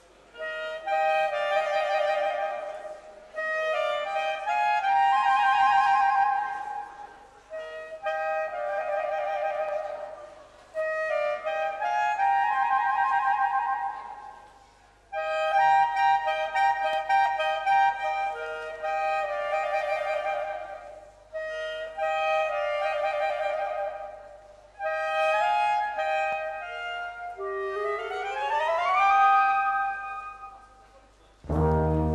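Two clarinets playing a polka melody as a duet in parallel harmony, with no band accompaniment, in short phrases separated by brief pauses. Near the end they sweep upward in a rising glissando.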